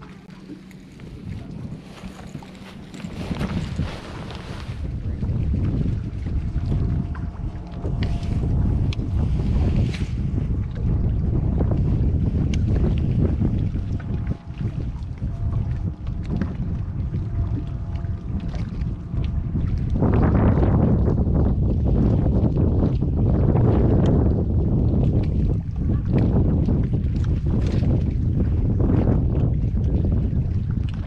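Strong wind buffeting the microphone on an open boat: a loud, rough low rumble that builds over the first few seconds and grows stronger again about twenty seconds in.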